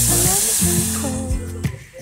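Water poured from an aluminium kettle into a hot pot of rice frying in oil, hissing and sizzling loudly as it hits, then dying away after about a second and a half. A pop song with singing plays underneath.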